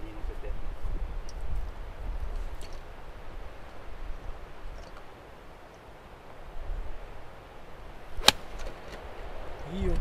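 A single sharp strike of a 9-iron hitting a golf ball, about eight seconds in, over a steady rumble of wind on the microphone.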